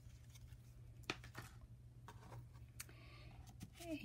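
Near silence with a few faint, brief clicks and light handling noises of small craft snips and a ribbon on a tabletop.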